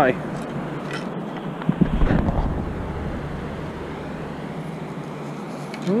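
Metal beach sand scoop digging into wet sand and pebbles, with a short cluster of gritty scraping strokes about two seconds in, over a steady wind hiss.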